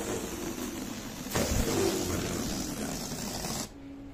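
Electric balloon pump running and blowing air, a steady rushing whir that grows louder about a second and a half in and cuts off sharply near the end.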